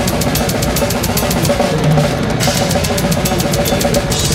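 A death metal drum kit played fast in a live band mix, a rapid, even stream of drum and cymbal strokes over the band's sustained low parts.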